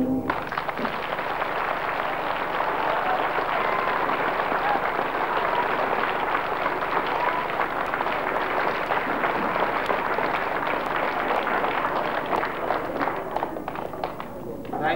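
Audience clapping steadily after a piece of music cuts off just after the start, the applause thinning out near the end.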